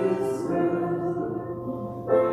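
Voices singing a hymn, holding the final note of a verse, which slowly fades before the next verse begins.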